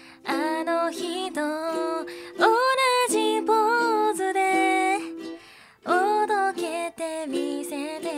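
A woman singing a Japanese song to a ukulele accompaniment, with a wavering vibrato on the held notes. The voice breaks off briefly a little past the middle, then comes back in.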